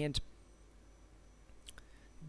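A man's voice says a single word, followed at once by one short sharp click, then a pause of faint room tone with a weaker click near the end.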